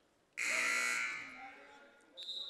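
Gym scoreboard horn sounding once, starting sharply about a third of a second in and holding for about a second before fading out.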